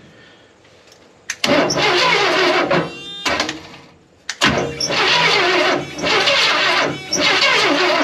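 A GMC P15 step van's 292 straight-six being cranked on its starter in three bursts, the first about a second and a half in, without catching. The engine gives no pop on the cranks, which the owners take as a sign of no spark.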